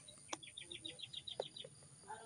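A bird's quick trill of about ten short, high, down-slurred notes, roughly nine a second, with two sharp clicks, one just before the trill and one near its end.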